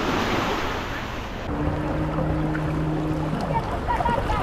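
Small waves lapping and washing over shoreline rocks, with wind on the microphone. A steady low hum joins about a second and a half in and stops shortly before the end.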